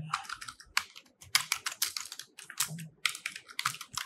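Typing on a computer keyboard: an irregular run of quick keystrokes with a couple of brief pauses.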